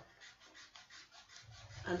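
Eraser rubbing on drawing paper in quick back-and-forth strokes, faint, as a drawn guide line is rubbed out.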